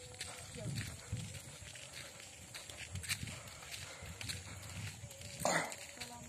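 Footsteps on a gravel village road at a walking pace, with a brief louder noise about five and a half seconds in.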